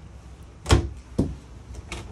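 Small cabinet door swung shut with a sharp clack about two-thirds of a second in, then a lighter knock half a second later and a faint click near the end.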